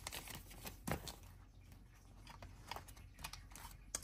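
Paper sticker sheets handled and slid into clear plastic photo-sleeve pages of an A5 ring binder: faint rustling with a few short taps, the loudest about a second in.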